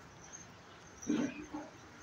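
A kitten gives one short call about a second in, lasting about half a second.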